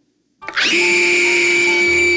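A woman's long, ear-piercing scream that bursts in suddenly about half a second in and holds at one steady high pitch.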